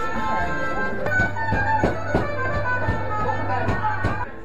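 Instrumental music with a melody over a held bass note that comes in about a second in, and a steady drum beat.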